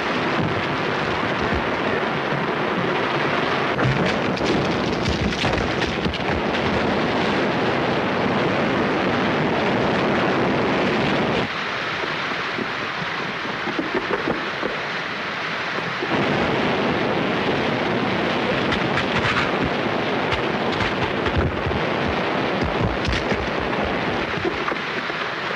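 Floodwater bursting into a coal mine: a loud, continuous rushing torrent with a few crashes, easing off a little for a few seconds near the middle.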